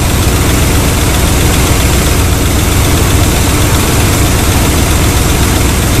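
Chevy engine idling steadily, warmed up to running temperature.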